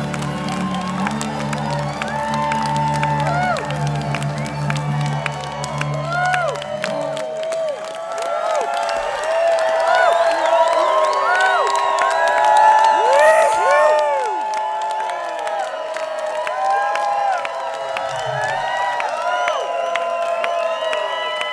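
A bluegrass string band (upright bass, acoustic guitar, banjo, fiddle) holds a last chord that stops about seven seconds in, while a crowd cheers and whoops; the cheering and whoops carry on alone after the music ends.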